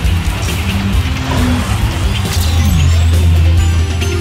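Theme-music sting for a TV sports show: a heavy, sustained bass with sharp percussive hits and sweeping whoosh effects, swelling louder in the second half.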